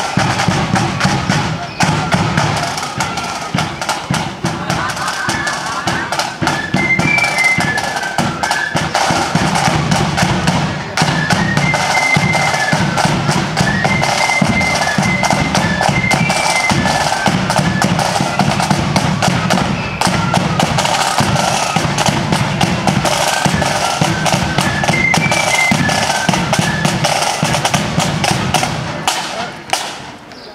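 Marching flute band playing a tune: massed flutes carry the melody over side drums and a bass drum beat. The music stops just before the end.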